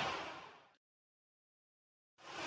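A swell of airy whoosh noise fading out over the first half-second, then dead digital silence.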